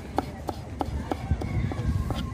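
Kitchen knife chopping cucumber on a wooden cutting board, a steady run of quick chops about three a second.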